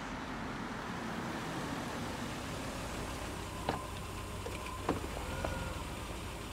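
A Volkswagen sedan pulls up slowly and stops with its engine running, a low steady rumble. In the second half come a few sharp clicks and short high tones.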